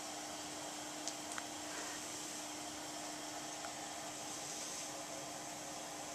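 Steady hiss of air with a faint, even hum from a CPAP-type breathing machine blowing through its hose to a full face mask. It runs smoothly, and the mask makes no leak noises.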